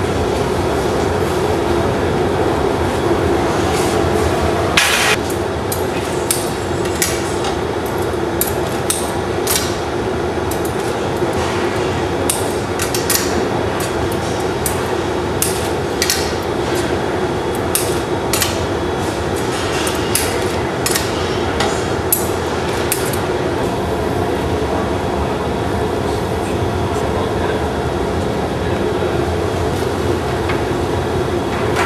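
Steady roar of a glassblowing hot shop's furnace and glory-hole burners, with scattered sharp metallic clinks and taps of hand tools, thickest in the middle stretch. A short hiss comes about five seconds in.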